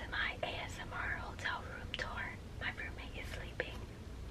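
A woman whispering in short phrases with brief pauses.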